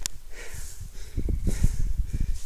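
Wind buffeting the camera's microphone as a low uneven rumble, with a sharp click at the start and handling and rustling noise from walking through tall grass.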